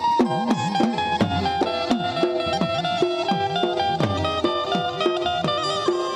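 Instrumental interlude of Gujarati dakla folk music: a hand drum beats a steady, fast rhythm of strokes that slide in pitch, under a sustained melody on violin and harmonium.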